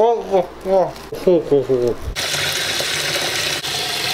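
Muffled voice sounds, then from about two seconds in a steady rush of tap water running into a plastic-lined basin, filling it for hydro dipping.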